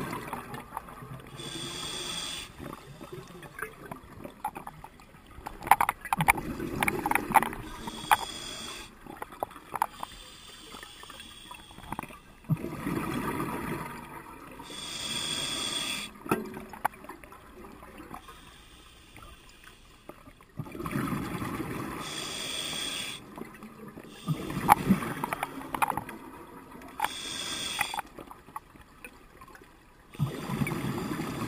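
Scuba regulator breathing underwater: the hiss of each inhalation through the demand valve alternates with a louder bubbling, crackling rush of exhaled air, about five breaths over the stretch.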